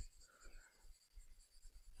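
Near silence, with a few faint, brief scratching sounds of a stylus drawing on a tablet.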